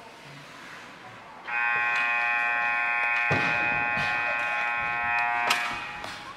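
Ice rink scoreboard horn sounding one loud, steady, chord-like tone for about four seconds, starting about a second and a half in. A dull thud falls in the middle of it and a sharp click near its end.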